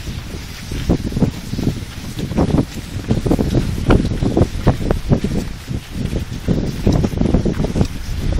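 Strong wind buffeting the microphone, a loud low rumble that surges in irregular gusts.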